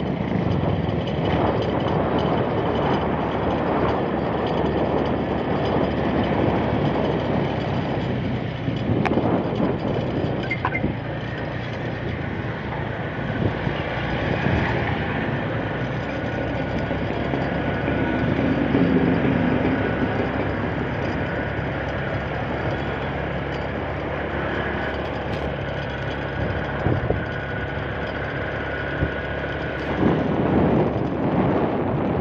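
Motorcycle riding along a road, heard from the rider's seat: the engine runs steadily under a dense rush of wind and road noise on the microphone.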